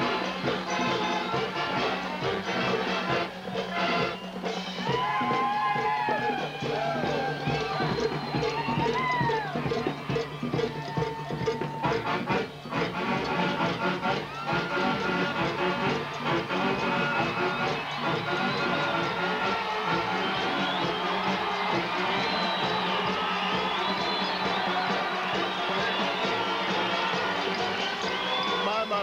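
A Philadelphia Mummers string band playing in full: saxophones, banjos and accordions carrying a steady tune, with a crowd cheering in the background.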